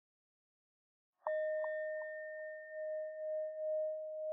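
A singing bowl struck once about a second in, ringing on as a sustained mid-pitched tone with fainter higher overtones and a slow wavering pulse.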